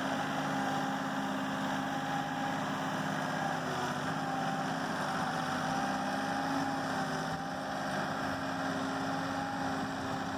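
Kioti NX6010 compact tractor's diesel engine running steadily while its front loader works a pile of dirt.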